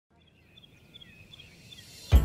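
Faint outdoor ambience fading in from silence: a bird repeating short paired high chirps at a steady pace, with a few faint gliding notes, over a low rumble.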